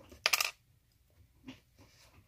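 Small hard plastic Lego pieces clattering briefly, a short clicking rattle about a quarter-second in, then a faint tap about a second later.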